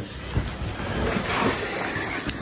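Clothes rustling as they are handled and moved aside, a steady noisy rustle with a light knock or two.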